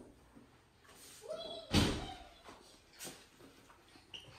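A door shutting with a single thump about halfway through, followed by a lighter click about a second later.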